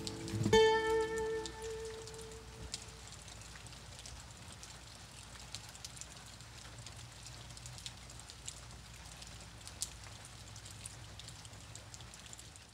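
The song's final guitar chord is struck about half a second in and rings out, fading away over about two seconds. After it comes a faint, steady hiss with a low hum and sparse small clicks, like light rain.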